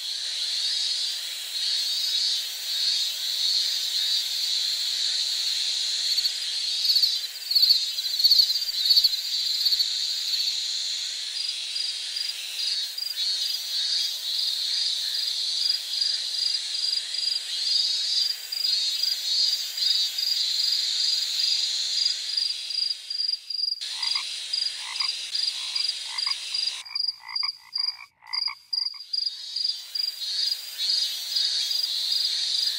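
Dense chorus of insects chirping, a steady high ringing with rapid pulsing and a regular repeated call standing out through the middle. In the last few seconds the mix changes abruptly and a lower, quicker pulsed call comes through.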